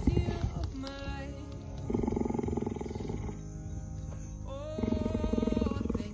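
Cheetah purring, a fast pulsing rumble that swells loud twice, about two seconds in and again near the end, over background music.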